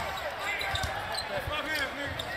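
A basketball being dribbled on a hardwood court, a few separate bounces, under the murmur of an arena crowd.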